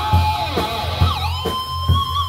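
Live rock band playing an instrumental passage: an electric lead guitar line over drums and bass guitar. About a second in, the lead note bends down and glides back up, then holds.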